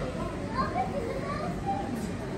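Indistinct chatter of visitors, with children's voices standing out in short bits over a steady crowd babble.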